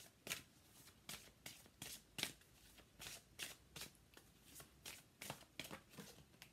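A deck of tarot cards being shuffled by hand, overhand from one hand to the other. Each pass makes a soft rustle or slap, about two to three a second.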